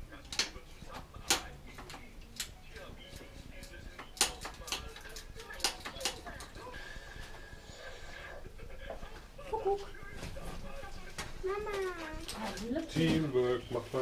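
Scattered sharp clicks and knocks of tools and parts being handled on a bicycle in a workshop repair stand. A person's voice comes in during the last few seconds.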